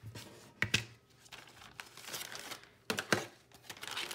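Plastic base-ten blocks clacking as they are swept and dropped into a zip-top plastic bag, with the bag crinkling. A few sharp clacks stand out, one about a second in and two close together about three quarters of the way through.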